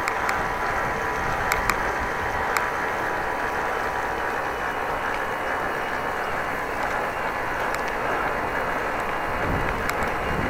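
Steady rushing road and wind noise of a bicycle being ridden, picked up by a camera mounted on the bike, with a few light clicks or rattles in the first few seconds.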